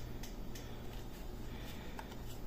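Universal TV remote control buttons being pressed: a few faint, short clicks spaced irregularly, over a low steady hum.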